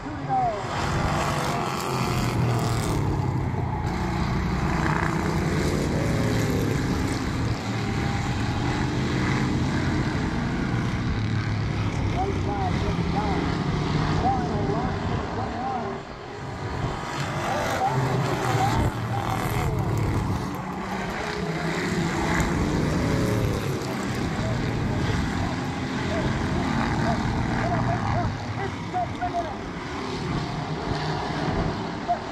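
Street stock race cars running laps of an oval, their engines droning steadily from across the track, with a brief lull about halfway through. Spectator voices are mixed in.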